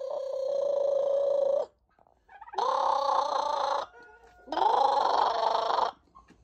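A person making three long, rolled trilling calls at the turkeys to coax them into gobbling; each call holds a steady pitch with a rapid flutter through it, and the turkeys do not answer.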